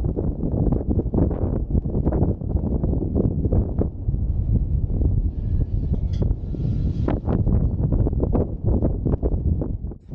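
Wind buffeting an action camera's microphone: a loud, uneven low rumble that swells and drops in gusts, with a brief scratchy rustle a little past the middle.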